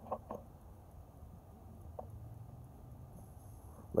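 Quiet background with a faint low rumble and a few brief faint clicks, two near the start and one about two seconds in.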